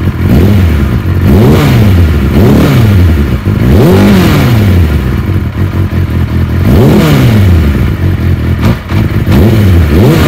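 1991 Kawasaki ZXR400's inline-four engine being revved in several throttle blips, its pitch rising and falling over about a second each time, between spells of fast idle. The bike has stood unstarted for about a month and needs warming up; the owner hopes a good run will sort out how it runs rather than a carb strip.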